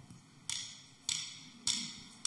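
Count-in before a band's song: three sharp, evenly spaced ticks a little over half a second apart, each with a short ringing tail.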